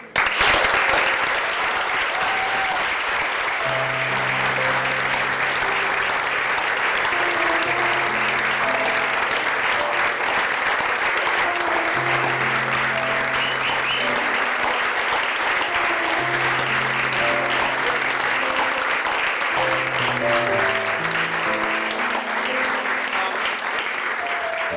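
An audience applauding steadily, with background music (a bass line and a plucked melody) coming in about four seconds in and running under the clapping.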